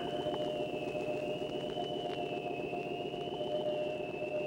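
Eerie electronic drone: a high, gently wavering tone over steadier lower tones, with a buzzing undertone.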